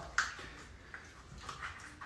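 Quiet sounds of a knife cutting into a whole sea bass on a cutting board, making a filleting cut near the head, with a short sharp click about a quarter second in and a few faint scrapes after.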